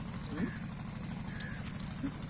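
Steady low hum of a running motor, with a brief faint voice about half a second in.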